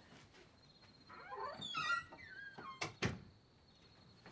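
A door creaking open in a long, wavering creak that slides up and down in pitch, followed by two sharp knocks about a quarter second apart. A faint steady high tone runs underneath.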